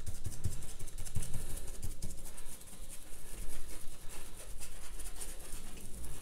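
Fan brush loaded with paint dabbed and mushed against watercolour paper: a run of quick, irregular light taps and bristle scratches, with soft low thumps from the paper and table.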